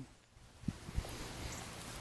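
Quiet outdoor background noise, with two faint low knocks about two-thirds of a second and one second in.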